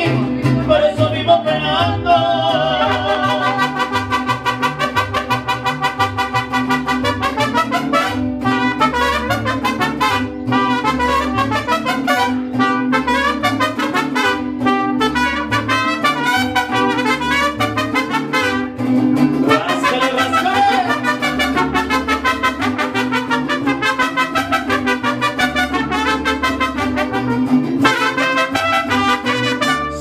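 Live mariachi band playing an instrumental passage between sung verses: trumpets carry the melody over strummed guitars and a pulsing bass line.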